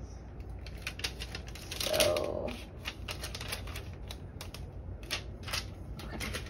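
Irregular light clicks and taps of plastic binder envelopes and paper tracker sheets being handled and shuffled on a desk.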